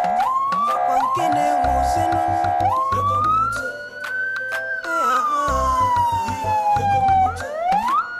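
A siren wailing over background music with a heavy bass beat; the siren rises slowly, falls off over a few seconds, then sweeps up again near the end, with quick short upward whoops near the start.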